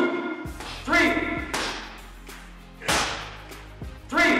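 Boxing combination workout audio: short pitched calls and sharp hits, about one a second, over a steady music bed.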